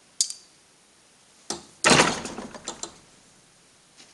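Steel parts knocking on the steel bed of a fly press: a sharp click just after the start, a knock about a second and a half in, then a loud metallic clank followed by a short clatter of smaller clinks.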